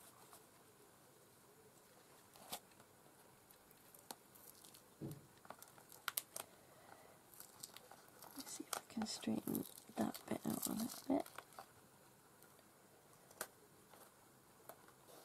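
Paper and card of a handmade journal being handled and folded: scattered crinkles and clicks, with a louder spell of rustling and crackling from about eight to eleven seconds in.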